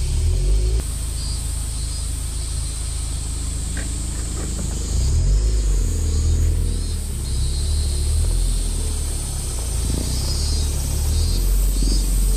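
Mazda Roadster (NB) four-cylinder engine running as the open-top car drives, a low rumble that gets louder about five seconds in, with a steady high hiss of wind and road noise in the open cockpit.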